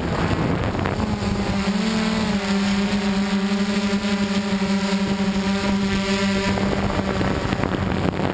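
DJI Flame Wheel F550 hexacopter's motors and propellers droning steadily in flight, heard through the onboard camera with wind rushing over its microphone. A steady motor tone comes through about a second in, rises slightly around two seconds, and fades near the end.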